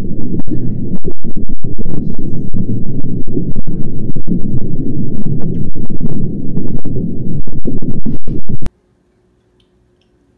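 A very loud, distorted low rumble with brief dropouts, cutting off suddenly near the end.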